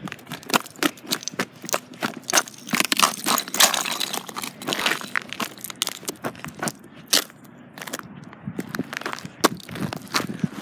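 Footsteps crunching through snow and crusted ice, a few crunches a second, thinning out near the end.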